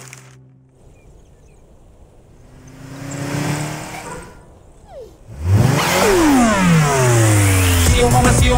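Cartoon sound effect of a car engine approaching, then speeding past loudly about five seconds in, its pitch falling away as it goes by.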